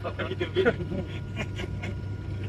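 People talking in the background over the steady low drone of an aircraft cabin in flight.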